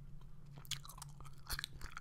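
Gum chewing close to a microphone: a string of soft, irregular mouth clicks and smacks as the gum is worked.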